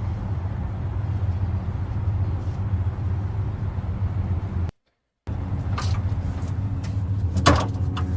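Steady low rumble of outdoor city ambience with distant traffic. It cuts out abruptly for about half a second near the middle, and a few brief knocks sound in the second half.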